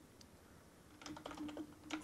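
Typing on a computer keyboard: a quick run of keystrokes starting about a second in, after a quiet first second.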